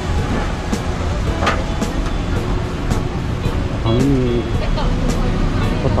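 Motor vehicle engine running close by, a steady low rumble, with roadside traffic noise and regular ticks about every half second to a second.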